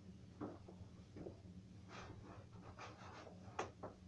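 Faint rustles and light knocks of a person moving about and handling things in a small room. About half a dozen short sounds, the sharpest about three and a half seconds in, over a steady low hum.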